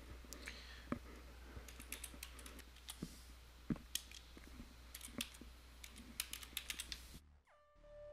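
Typing on a computer keyboard: a run of irregular key clicks over a low steady hum. Near the end the hum cuts off and a simple electronic melody of held notes begins.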